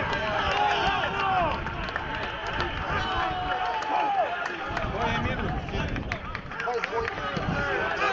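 Several voices shouting and cheering at a goal, calls overlapping, with a few sharp knocks in among them. Louder at the start, it dies down in the middle and picks up again near the end.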